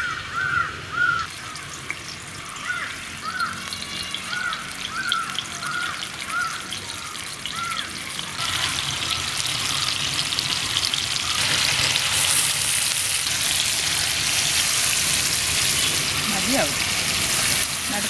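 Masala-coated avoli (pomfret) fish pieces sizzling in hot oil on a flat iron pan. The frying grows louder in the second half as more pieces are laid in. During the first half a bird calls repeatedly, about twice a second.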